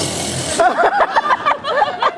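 A short hissing buzz, a vocal imitation of a phone taser going off, then an audience laughing, many voices overlapping.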